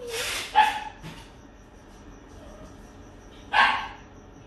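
Dog barking: two barks in the first second and one more near the end.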